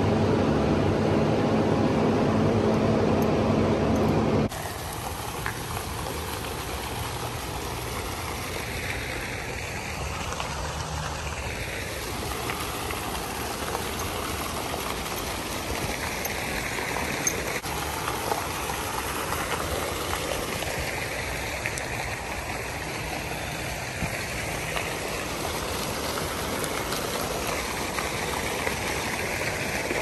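A steady mechanical hum for the first four or five seconds, cut off abruptly, then the steady splashing of fountain jets falling into a pool.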